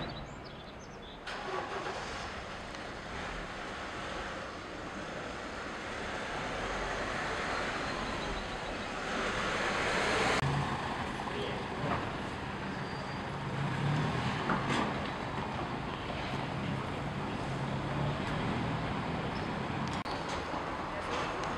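A van's engine running as it drives slowly along a narrow cobbled lane, growing louder as it approaches over the first ten seconds, amid echoing street noise.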